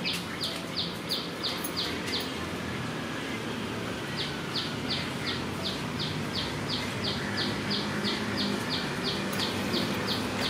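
A high, short chirping call repeated about three times a second over steady low background noise. It breaks off a little after two seconds in and takes up again about two seconds later.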